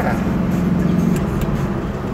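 Steady engine and road noise inside a moving car's cabin, a low hum that eases slightly after about a second.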